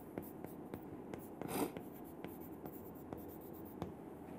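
Chalk writing on a chalkboard: faint taps and scratches of short strokes, with one longer scratch about one and a half seconds in.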